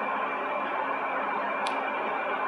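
A steady, unchanging drone with a hiss under it, holding a few level tones. There is one faint tick about one and a half seconds in.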